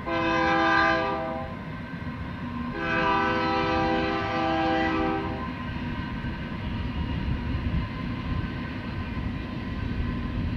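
A horn sounding a held chord twice: a short blast of about a second and a half, then a longer one of nearly three seconds, over a steady low rumble.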